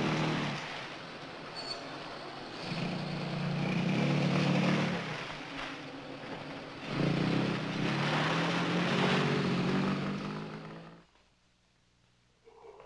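Open sports car's engine running and swelling louder three times as it accelerates, then fading out a little before the end.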